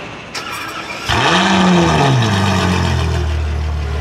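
Ferrari F12 Berlinetta's 6.3-litre V12 with an aftermarket exhaust starting up: after a short click, the engine catches about a second in, flares up in revs, then drops back and settles into a steady idle.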